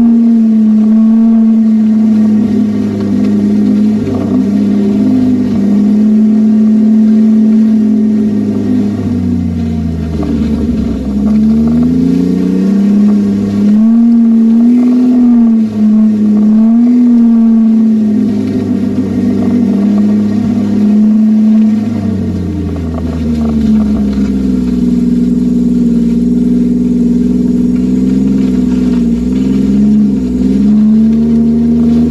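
Snowmobile engine running loudly at a steady pace along a groomed trail. The pitch drops twice as the throttle eases off, about a third of the way in and again near the end, then climbs back as it speeds up.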